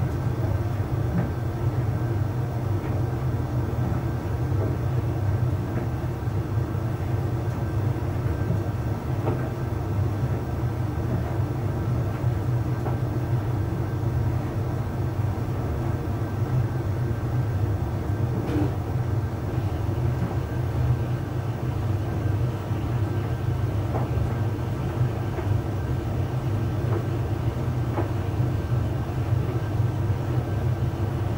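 Arçelik 3886KT heat-pump tumble dryer with inverter motor running mid-cycle: a steady low hum as the drum turns, with laundry tumbling and a few faint knocks.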